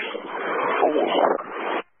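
Two-way radio transmission of hiss and static, with no clear words, cutting off abruptly near the end as the transmission drops.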